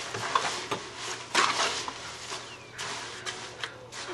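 Garden fork scraping and pushing through a wet cob mix of clay, sand and straw in a wheelbarrow, in several separate strokes, the loudest about one and a half seconds in.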